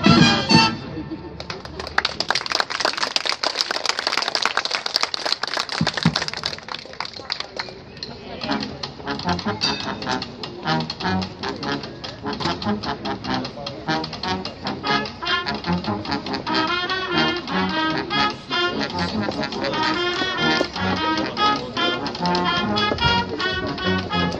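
A brass band's piece ends about a second in, followed by about five seconds of clapping from spectators. Then the marching brass band starts playing again, brass over drums, building in fullness toward the end.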